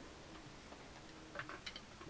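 Quiet room tone, with a few faint light clicks about one and a half seconds in.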